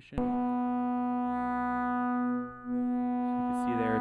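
Steady synthesizer tone from a sine wave run straight through a eurorack waveshaper with no modulation, the waveshaping already adding harmonics to the pure sine. It begins with a click and dips briefly about two and a half seconds in.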